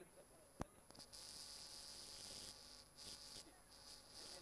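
Faint high-pitched buzzing of insects: a single sharp click, then a hissing buzz that starts about a second in, drops away at about two and a half seconds, and comes back in short bursts near the end.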